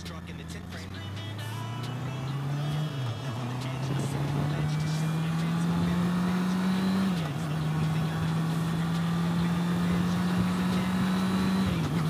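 Honda CB650R's inline-four engine heard from the rider's helmet, accelerating up through the gears. Its note climbs, drops at an upshift about three seconds in, climbs higher and drops at another shift about seven seconds in, then rises slowly again until a third shift at the very end, growing louder overall.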